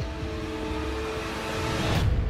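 A trailer-style rising whoosh of noise over a held low music drone, swelling toward the end and cutting off suddenly.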